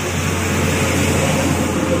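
Street traffic noise: a steady, noisy rush of a vehicle going by, swelling about a second in, over a low steady hum.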